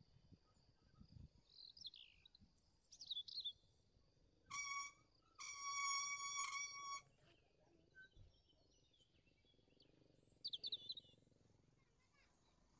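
Bicycle brake squealing with a high, trumpet-like tone: a short squeal about four and a half seconds in, then a longer one lasting about a second and a half. Birds chirp before and after the squeals.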